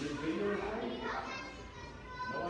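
Voices of people talking in a room full of seated people, several at once, fading somewhat in the second half.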